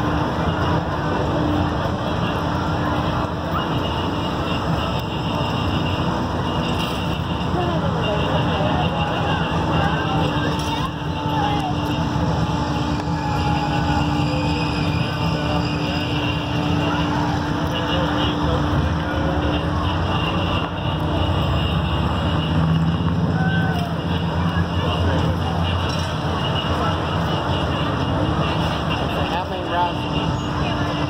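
Steady motor drone of fairground ride machinery, a constant low hum, with people's voices faint in the background.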